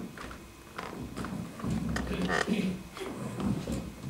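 Indistinct low voices with several short knocks and footsteps on a wooden stage floor as people sit down at a table.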